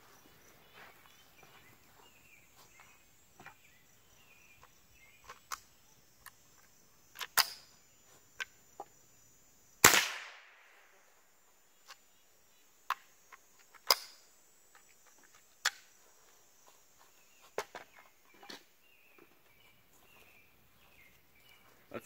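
A single .22 Long Rifle rifle shot about ten seconds in, sharp and trailing off in a short echo, among a scatter of lighter clicks and knocks. Crickets chirp faintly throughout.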